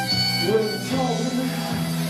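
Live band music: an instrumental stretch of the song between sung lines.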